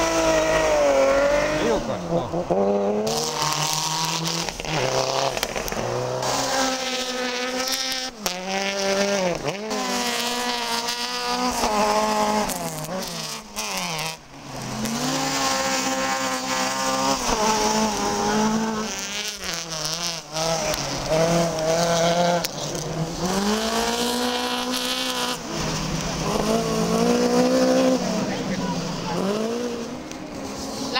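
Rally car engines revving hard, their pitch climbing and dropping again and again as the drivers work through the gears while the cars go past.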